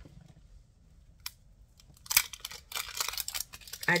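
A small click about a second in, then a run of short hissing spritzes in the second half from a travel-size Bath & Body Works Coco Paradise perfume pen spray.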